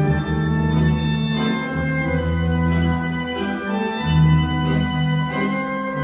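Wurlitzer theatre pipe organ playing a waltz: full held chords over a bass line whose notes change every second or so.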